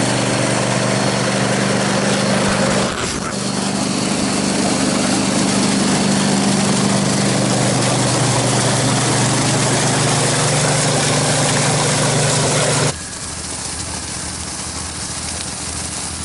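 Water tender truck's engine and pump running steadily while water gushes from its discharge pipe into a portable fold-a-tank. About three seconds before the end the sound cuts off suddenly to a quieter steady hiss.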